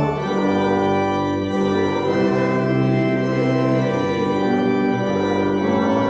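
Church organ playing a hymn in slow, sustained chords, the harmony changing every second or so.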